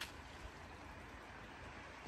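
Faint steady outdoor background noise with no distinct event, and a small click at the very start.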